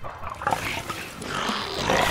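Cartoon seagulls squawking, over a rush of noise that grows louder toward the end.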